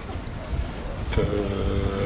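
Low rumble of wind buffeting the microphone; a little over a second in, a man's voice holds a steady 'mmm' of hesitation for under a second.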